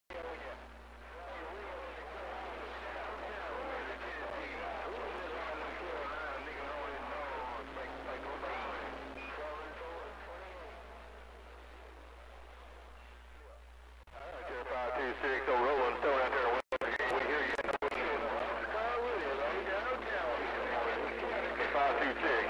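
Voices of other stations coming over a CB radio receiver, over a steady low hum. About 14 seconds in a louder transmission comes in, cut twice by brief dropouts.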